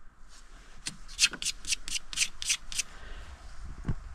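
About eight quick, scratchy rubbing strokes over two seconds, like a hand or glove brushing a surface, then a soft thump near the end.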